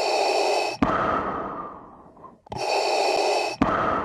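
Heavy breathing, twice: each breath is a loud intake of about a second followed by a longer exhale that fades away.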